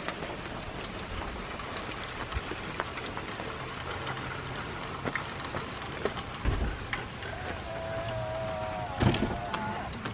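Heavy rain falling steadily, with many small drop ticks. Near the end a steady hum and a sharp knock come through the rain.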